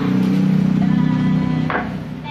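A single chop of a Kershaw Camp 12 machete blade into a green coconut on a wooden block, about three-quarters of the way in. Under it runs a loud, steady low drone that fades just after the chop.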